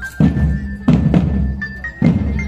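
Marching drum band playing: heavy bass-drum hits twice, under a high melody that steps from note to note.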